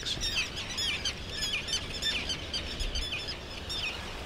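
Many terns calling over a colony: short, harsh, high calls with a falling end, overlapping several times a second, over a low rumble.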